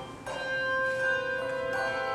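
Handbell choir ringing: a loud chord dies away, then softer sustained bell notes come in about a quarter second in, and another joins near the end.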